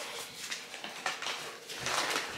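Faint rustling and light handling noises, with a soft low thump near the end.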